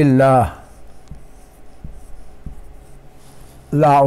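Marker pen writing on a whiteboard: faint rubbing strokes during a pause in a man's speech.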